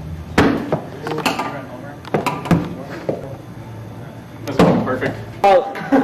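Several sharp knocks and bangs echo off hard hallway walls during a bat-and-ball game in play, the loudest two near the end. Short shouts come in among them.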